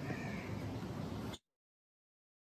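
Faint outdoor background noise with a bird calling, which cuts off suddenly to silence about one and a half seconds in.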